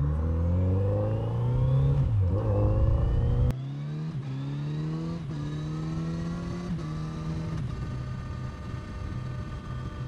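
Kawasaki Z900RS Cafe's inline-four engine accelerating away from a stop through the gears. Its pitch climbs in each gear and drops back at each of several upshifts, then settles to a steady cruise in the last couple of seconds.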